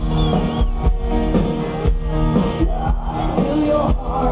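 A live rock band playing amplified through a concert PA, recorded from within the audience: loud, steady full-band music with bass and held chords.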